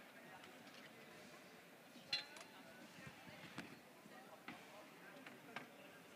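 Near silence: faint room tone of a large hall with distant voices, broken by a handful of faint clicks and knocks, the clearest about two seconds in.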